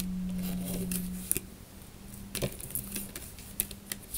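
Small sharp clicks and taps from handling a deck of tarot/oracle cards, three of them spaced about a second apart, over a low steady hum that drops off about a second in.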